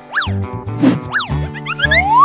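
Bouncy children's background music with a pulsing bass line, overlaid with cartoon sound effects: two quick up-and-down pitch sweeps, then a rising whistle glide near the end.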